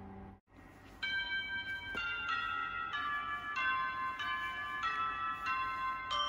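A piano chord dying away and cut off abruptly about half a second in. From about a second in, a melody of bright, bell-like chiming notes plays.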